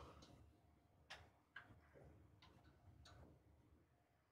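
Computer mouse clicking a handful of times, faint and irregularly spaced, over near-silent room tone.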